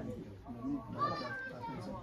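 Indistinct background voices and chatter, with a brighter, higher-pitched voice, perhaps a child's, about a second in.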